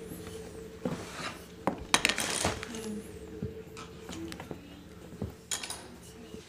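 Plastic fashion doll and toy car being handled by hand: scattered light clicks and knocks of plastic on plastic, with a short rustle about two seconds in, over a faint steady hum.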